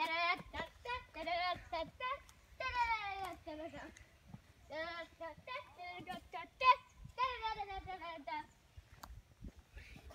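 A child's voice imitating an angry bird: a string of high, warbling vocal calls with a wavering pitch, some short, some lasting about a second, separated by brief pauses.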